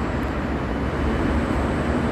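Steady low rumble and hiss of background noise, strongest in the deep bass, with no distinct event standing out.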